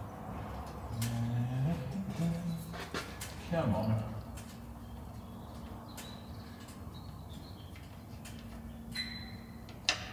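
A man humming a few low notes while working under the car at the sump drain plug, with scattered light clicks from the work. The oil is not yet pouring.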